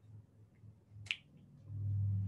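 A quiet pause with a single sharp click about a second in; a man's low voice begins near the end.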